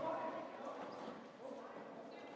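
Indistinct voices of players and onlookers in a school gymnasium, strongest near the start and fading to a low murmur.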